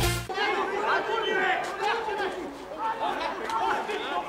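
Electronic music cuts off abruptly just after the start. Indistinct chatter and calls from several voices follow, as from players and spectators at a small football ground.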